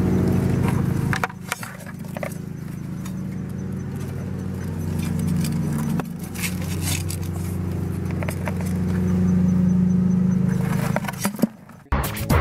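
Steady low engine drone that swells a little in the second half, with light scrapes and clicks over it. It dips briefly at about one second and again around six seconds, then drops away just before the end.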